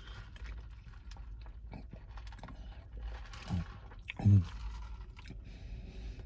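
A man sipping a drink through a straw from a foam cup, with faint wet mouth and swallowing sounds. About halfway through come two short hums that fall in pitch.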